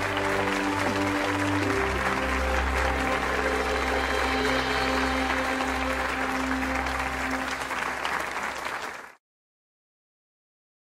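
Theatre audience applauding over background music of held, sustained notes; both cut off abruptly about nine seconds in.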